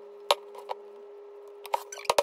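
A few sharp clinks of a metal mixing bowl knocking against a metal cake pan as thick carrot-cake batter is poured in. The loudest comes about a third of a second in, with smaller ones near the end, over a steady low hum.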